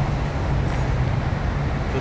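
Steady low vehicle rumble with a constant low hum, no distinct events.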